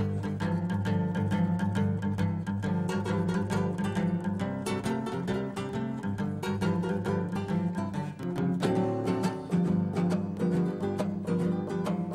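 Two acoustic guitars playing the instrumental intro to a blues song: picked notes over a steady bass line, starting right at once.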